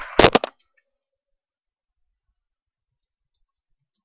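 A short, sharp crackling burst right at the start, close to the microphone. Then near quiet with a few faint computer-keyboard clicks as a chat message is typed.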